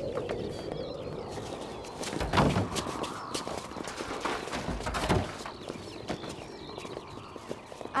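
Several people running on a gravel road, a rapid patter of footsteps, with two louder bursts about two and a half and five seconds in.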